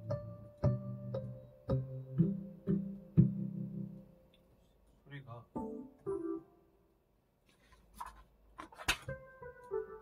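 Digital piano played by hand: low chords under a melody for the first four seconds, then a few scattered notes and a pause. A couple of sharp knocks sound near the nine-second mark, and new chords begin just before the end.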